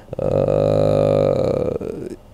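A man's long, drawn-out hesitation sound, a steady low "eh" held for about a second and a half without breaking into words.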